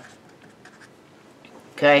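Marker pen writing on paper: a few faint, short scratching strokes as the last letters of a word are finished.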